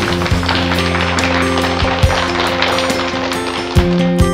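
Applause over background acoustic guitar music, the clapping dying away near the end.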